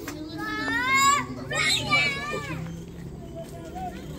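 A high-pitched voice calls out twice in quick succession, the first call rising in pitch, over a low murmur of a crowd.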